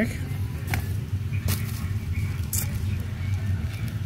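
Plastic packaging crinkling a few times as bubble-wrap mailers and bagged items are handled, over a steady low hum.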